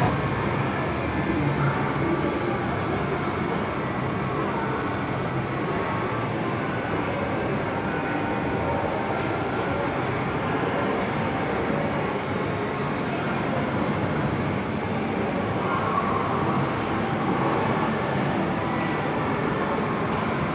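Steady, reverberant din inside a large shopping mall: many distant voices and general crowd noise blending into a constant wash, with faint background music.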